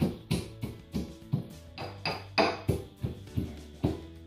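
Pestle pounding nuts in a mortar to crush them: sharp, irregularly spaced knocks, about two or three a second, over background music.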